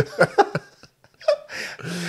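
Men laughing in a few short bursts that die away about halfway through, followed by a breath near the end.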